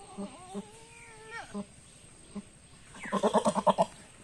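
Goat bleating twice: a long, steady bleat in the first second and a half, then a louder, quavering bleat near the end.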